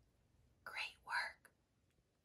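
A woman whispering two short syllables a little past halfway through, breathy and without voice.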